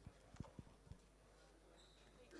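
Near silence: faint room tone, with a few soft, low thumps in the first second.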